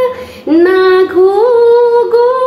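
A woman singing a Garhwali khuded geet unaccompanied, holding long notes with slow glides between them. There is a brief pause for breath at the start.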